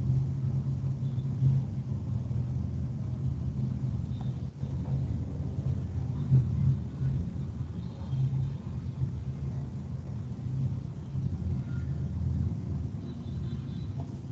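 Steady low rumble of background noise, wavering in level, with no speech.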